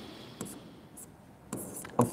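Faint taps and short scratches of a pen stylus on an interactive smart-board screen as numbers are written, with a sharp tap about half a second in.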